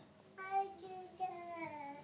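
A toddler's voice in a drawn-out sing-song babble, starting about half a second in and sliding slowly down in pitch.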